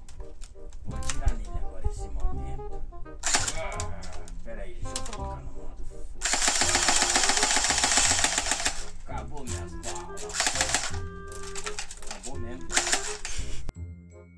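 Background music with a steady beat; about six seconds in, a loud, rapid, even train of clicks lasting about three seconds: an airsoft M4 electric rifle firing on full auto. Shorter bursts of clicks follow near the end.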